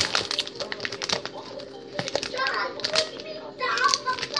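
Plastic candy wrapper crinkling and crackling as it is handled, a quick run of small crackles that is busiest in the first couple of seconds.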